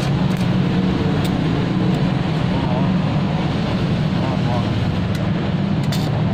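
Stick (arc) welding on thin steel sheet: the electrode's arc crackles and hisses steadily, with a low hum underneath.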